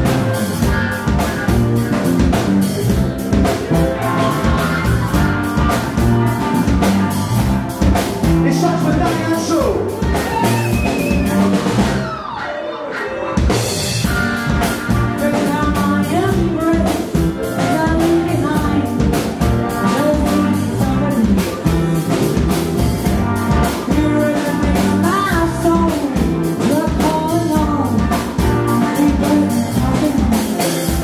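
A live rock band plays: drum kit, electric bass and strummed acoustic guitar, with a woman singing into a microphone. The drums and bass drop out for a moment about twelve seconds in, then come back.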